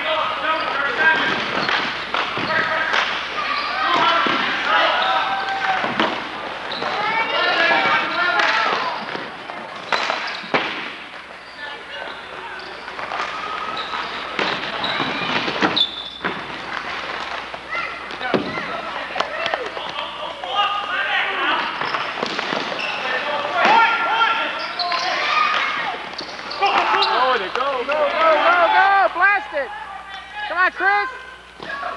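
Indoor ball hockey play: indistinct shouting and talk from players and onlookers, with sharp knocks of sticks and ball on the court every few seconds.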